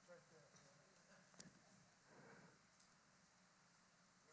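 Near silence: faint, distant voices barely picked up, with a single soft click about one and a half seconds in.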